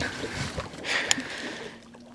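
Quiet handling noise on a fishing boat: a soft rustle swelling about a second in, with a light click, and a faint steady hum near the end.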